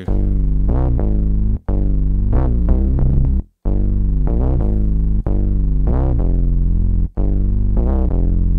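Software synthesizer playing sustained low chords or bass notes in repeating phrases about two seconds long, each cut off by a brief gap.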